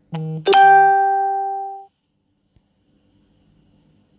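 A two-note chime: a short lower note, then a louder, brighter note that rings and dies away over about a second and a half.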